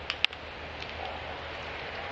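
A single sharp crack of a wooden bat hitting a fastball and driving it into the ground, followed by the steady murmur of the ballpark crowd.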